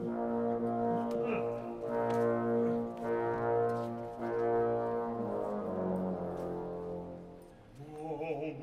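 Opera orchestra playing a series of long held chords led by brass, then dying away over the last few seconds.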